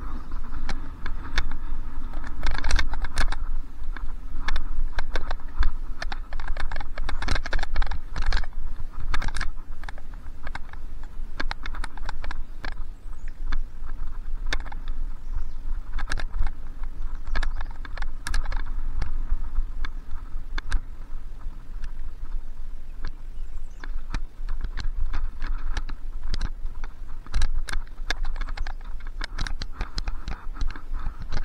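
A mountain bike rattling and clattering over a bumpy dirt trail, heard through a handlebar-mounted camera: dense irregular clicks and knocks over a steady low rumble.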